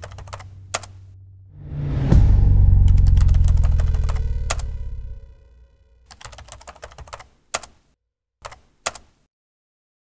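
Typewriter sound effect: bursts of quick key clicks as text is typed out. About 2 s in, a deep rumbling boom hits and fades away over about three seconds, the loudest sound here. A second run of key clicks follows from about 6 to 9 s.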